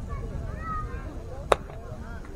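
A baseball game: a single sharp smack of a baseball, about a second and a half in, over faint spectator voices.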